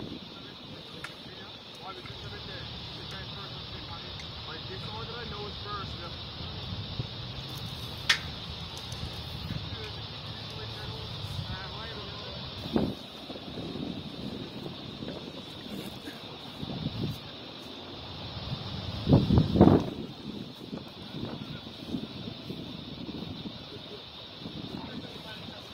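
Outdoor ambience with a steady hiss of wind and faint, indistinct voices, broken by a few knocks and clicks, the loudest burst about two-thirds of the way through.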